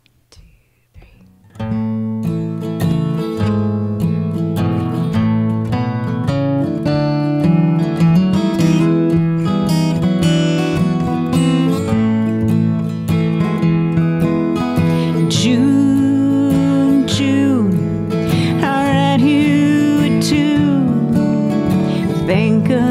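Two steel-string acoustic guitars start a song's intro together about a second and a half in, after a quiet opening. A woman's voice comes in singing about two-thirds of the way through.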